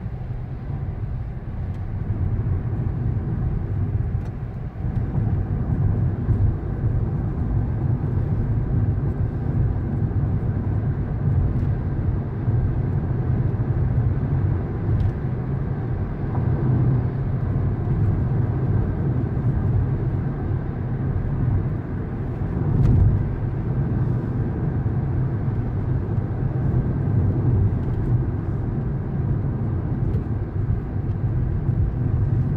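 Road and engine noise inside a moving car's cabin: a steady low drone with no sudden events.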